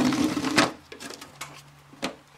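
Hands handling a plastic jump starter pack and its 12 V accessory-socket plug and cable: rubbing and rustling, loudest in the first half second or so, then fading to faint scrapes as the unit is picked up.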